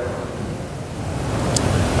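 Steady, fairly loud hiss of background noise on a lapel microphone during a pause between chanted phrases, with a short faint click about one and a half seconds in.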